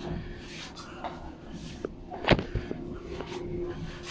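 A steady low hum with a few small clicks and one sharp knock a little past halfway.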